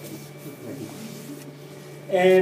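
Room tone: a steady low machine hum with a thin, faint high whine above it.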